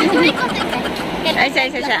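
People's voices talking and laughing over the steady wash of surf breaking on a beach.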